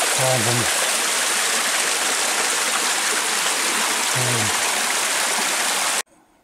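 Spring water running out of a mossy rock face and splashing down onto stones, a loud, steady rushing sound.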